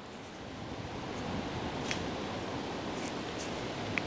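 Steady outdoor background noise, a low rushing haze, with a few faint ticks about two seconds in and near the end.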